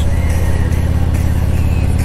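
Harley-Davidson Ultra Classic's Milwaukee-Eight 107 V-twin running steadily at cruising speed, a low, even engine note with no change in revs.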